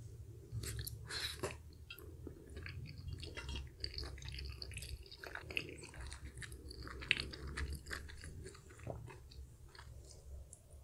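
Close-miked chewing of a spicy chicken dumpling, with many small wet mouth smacks and clicks at an uneven pace.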